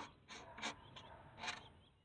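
Oil filler cap being twisted back onto the engine's valve cover: a sharp click, then a few faint clicks and scrapes as it is turned home.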